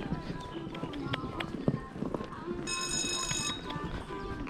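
A horse walking on arena sand, its hoofbeats and tack giving soft irregular clicks and thuds. About three seconds in, a short high electronic beep sounds for under a second.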